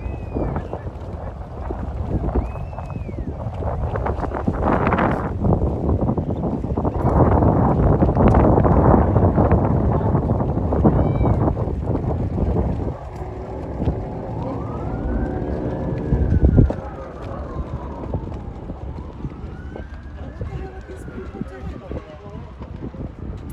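Emergency vehicle siren wailing in slow rising and falling sweeps, clearest in the second half, heard over heavy wind noise on the microphone.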